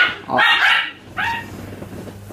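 Dogs barking indoors: several short barks in quick succession in the first second and a half, then they stop.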